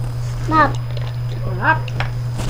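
A young child's voice: two short high-pitched vocalizations, each bending up and down in pitch, about a second apart, over a steady low hum.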